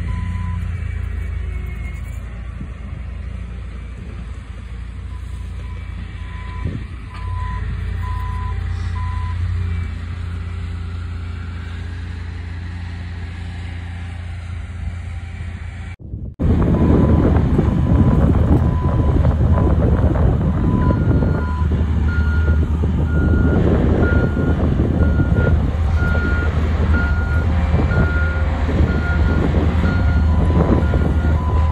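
Diesel earthmoving machines at work: a Bobcat compact track loader's engine runs steadily while a reversing alarm beeps for the first ten seconds or so. After a sudden cut about halfway, the machinery noise is louder and rougher. Backup alarms beep at two different pitches as a track loader and a smooth-drum roller work the fill pad.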